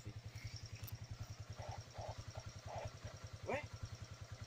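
A vehicle engine idling, heard as a faint, steady, even low throb, with faint distant voices in the middle and a short spoken word near the end.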